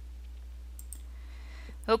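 A couple of faint computer mouse clicks about a second in, over a steady low hum of room tone.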